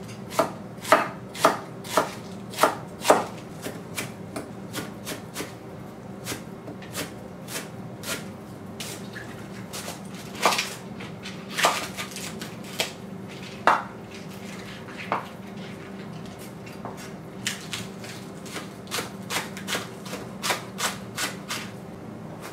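A chef's knife chopping cabbage and then green onions on a wooden cutting board, the blade knocking on the wood. There are loud strikes about two a second at the start, then lighter, quicker cuts with a few harder knocks, over a steady low hum.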